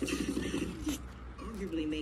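A low, pulsing, cooing, voice-like sound, with a comic book's paper page turned and a short rustle about a second in.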